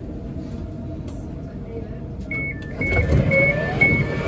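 Train door-closing warning: a repeated high two-note beep that starts about halfway through, as the sliding passenger doors close with a louder low rumble. Station crowd noise is heard underneath.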